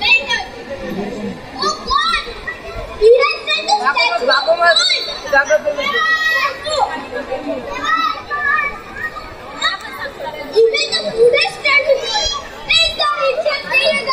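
Children's voices speaking and chattering.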